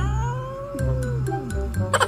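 Tabby cat giving one long, drawn-out meow that rises and falls in pitch, a complaint at being held and nuzzled when it is not in the mood. Background music with a steady bass beat plays under it.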